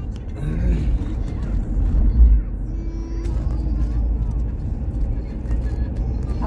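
Moving car's engine and tyre rumble heard from inside the cabin, a steady low drone that briefly swells about two seconds in. Brief bits of voice come through near the start.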